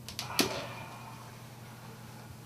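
Plastic lid pulled off a paper takeaway coffee cup: a faint click, then one sharp snap about half a second in. A low steady hum runs underneath.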